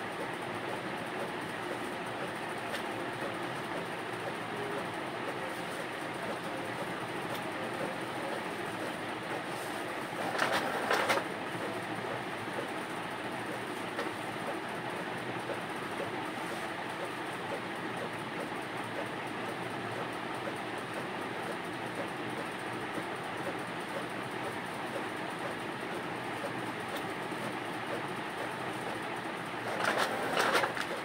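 Steady background noise throughout, with two brief rustles of printed paper sheets being handled: one about ten seconds in and one at the very end.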